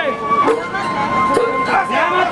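Sawara-bayashi festival music from the float: a bamboo flute holding one long high note over the shouting voices of the float crew.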